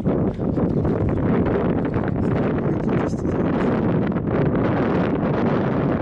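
Strong wind buffeting the microphone, a steady low rumbling rush that flutters rapidly.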